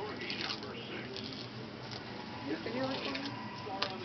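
Dressing gauze and plastic rustling and crinkling as it is peeled off the skin, under faint low voices, with one sharp click near the end.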